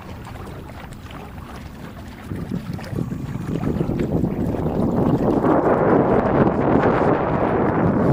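Wind on the microphone and water rushing past a Hobie sailing trimaran under full sail. The noise is low at first, swells from about two seconds in, and is loudest over the last three seconds.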